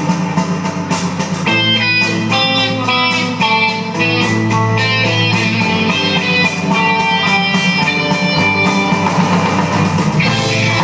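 Live rock band playing: distorted electric guitars carry a stepping melody line over a drum kit, with cymbals struck about twice a second.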